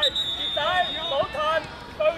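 Children's voices shouting and calling across a youth football pitch, high-pitched and overlapping. A thin, high, steady tone sounds through about the first second, over the voices.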